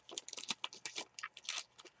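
Trading cards being handled and flipped through a stack by hand: a run of soft, irregular clicks and card-on-card rustles.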